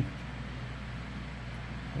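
Steady low hum with a faint even hiss, no distinct events: background room tone.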